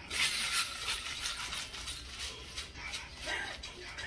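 Suitcase being handled: a rasping rustle, loudest in the first second, then rapid ratcheting clicks and rustling.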